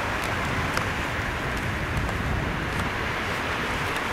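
Steady outdoor background noise: an even low rumble with a hiss above it and a few faint ticks.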